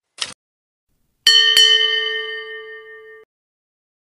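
A brief click, then a bell-like ding struck twice in quick succession, ringing and fading for about two seconds before cutting off abruptly: a subscribe-button and notification-bell sound effect.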